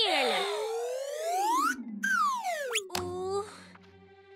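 Cartoon slip-and-fall sound effect. A slide-whistle-like tone glides up for nearly two seconds, breaks off, then glides back down. It ends in a thump about three seconds in, with a low tone fading after it.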